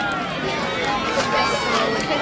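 Crowd of spectators along a track, many voices at once shouting, cheering and talking as runners pass.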